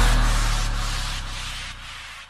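Electronic dance music transition: a deep sustained bass note and a hissing white-noise sweep, both fading away steadily.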